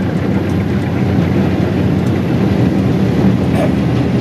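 Steady, loud drone of the Eschlböck Biber 84 high-volume wood chipper and its truck running, heard from inside the crane operator's cab.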